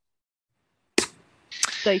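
Dead silence for about a second, then a single sharp click as the call audio cuts back in, trailing into faint hiss before a man's voice resumes.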